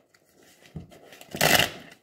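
A deck of tarot cards being shuffled by hand: a soft tap about three-quarters of a second in, then one short rush of shuffling cards about a second and a half in.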